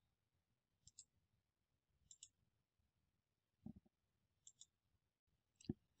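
Near silence, broken by a few faint, short clicks scattered through it.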